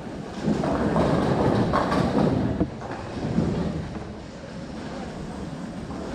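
Bowling ball rolling down the lane into the pins: a loud rumbling clatter for the first three seconds or so, then the lower steady din of the alley.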